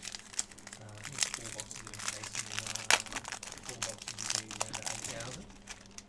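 Cellophane wrapper of a basketball trading-card pack crinkling as it is peeled open and pulled off the cards by hand, in many small crackles.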